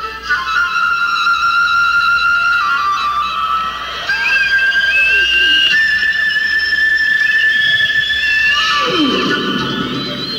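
Live solo flute holding long sustained notes, stepping up in pitch about four seconds in and again a couple of seconds later, with some wavering slides around the held tones.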